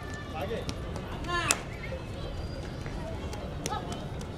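Scattered shouts and calls from players and onlookers, with one sharp, loud shout about a second and a half in, over a steady low background noise.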